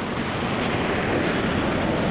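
Steady rushing noise beside a wet road: wind on the microphone and traffic on wet asphalt.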